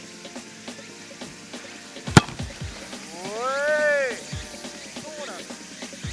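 A soccer ball kicked off the turf for a footgolf tee shot: one sharp thump about two seconds in, over background music. About a second later comes a drawn-out call that rises and falls in pitch.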